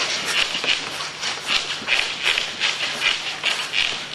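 Boxers' short, sharp hissing exhalations as they throw punches while shadow boxing, about three a second in an uneven rhythm.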